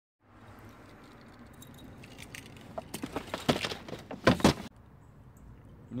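Small rattling and clicking handling sounds over a faint steady background hiss, with a cluster of sharp clicks and taps between about two and four and a half seconds in.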